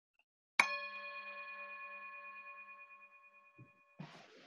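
A bell struck once with a wooden striker, ringing out with several clear tones and slowly fading over about three seconds. It marks the close of the enacted scene.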